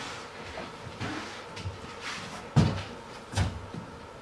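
A person getting up off a floor and moving about: soft shuffling and two dull thumps, the louder one about two and a half seconds in and the other just under a second later.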